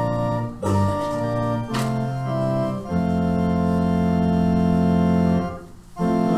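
Organ playing sustained chords as a hymn introduction, the chords changing several times before a long held final chord that is released about half a second before the end, ready for the congregation to begin singing.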